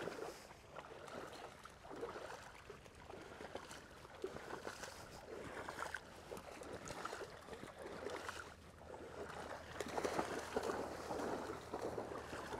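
Shallow flood water sloshing and splashing in uneven surges as a person wades through it in waders, with dogs splashing through the water alongside.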